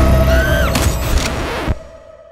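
Horror trailer sound design: a heavy low rumble with a steady drone and a high screeching tone that rises then bends down, with a sharp hit a little under a second in. It all cuts off abruptly near the end, leaving only a faint steady tone.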